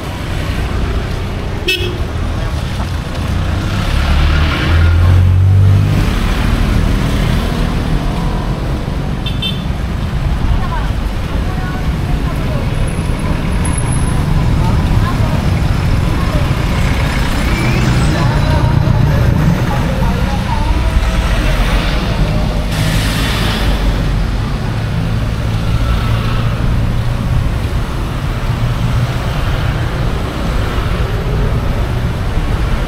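Busy city street traffic passing close by: motorcycle and car engines running past on a wet road, with a horn sounding now and then. The engine rumble is loudest about four to six seconds in.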